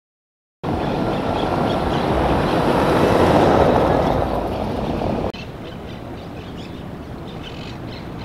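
Road traffic on a seafront avenue: the noise of a passing car swells and fades over a few seconds. After a sudden drop it gives way to quieter open-air ambience with faint bird chirps.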